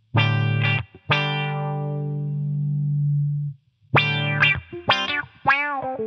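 Electric guitar played through a Subdecay Prometheus 3 pedal's envelope low-pass filter: a short note, then a long note held for about two and a half seconds. Near the end come several quick plucked notes whose tone sweeps up and down with each pluck.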